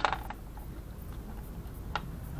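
Sharp knock from a 3D-printed resin bullet mold being worked open, followed by a few quick light clicks and another click near the end, as the cast 9mm bullet is freed from the cavity.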